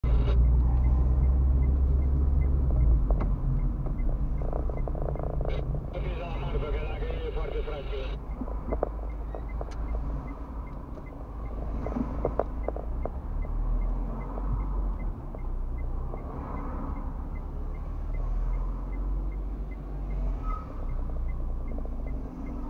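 Car interior heard from a dashcam: a low engine and road rumble, louder for the first three seconds and then settling lower, with a faint regular ticking about twice a second.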